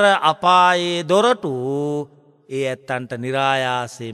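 A Buddhist monk's voice chanting in long, drawn-out held notes that bend up and down. There are two phrases with a short break about two seconds in.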